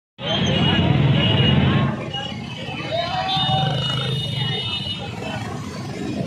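Crowd of riders shouting and talking over the engines of many motorcycles and scooters running slowly in a procession. It is loudest in the first two seconds. A steady high tone sounds from about three to five seconds in.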